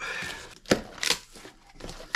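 Cardboard shipping box being opened by hand: a rustling tear of packing tape, then a sharp snap and rustle of the cardboard flaps about a second in.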